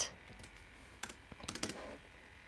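A few light key taps on a laptop keyboard: one about a second in, then a quick run of three or four.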